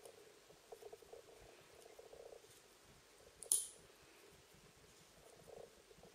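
Faint handling sounds of shuttle tatting: cotton thread drawn and rubbed through the fingers, with small ticks from the shuttle. A single short, sharp hiss comes about three and a half seconds in.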